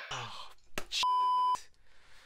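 A single steady electronic beep lasting about half a second, starting about a second in: the tone of a phone video call being hung up from the other end.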